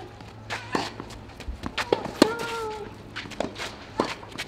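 Tennis rally on a clay court: several sharp racket-on-ball hits about a second apart, with a player's drawn-out grunt on the loudest shot about two seconds in. Footsteps on the clay are heard between the shots.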